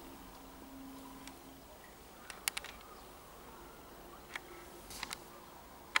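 Quiet room tone with a faint hum that stops after about a second and a half, then a few small sharp clicks: a quick cluster about two and a half seconds in, one near four and a half seconds, and two around five seconds.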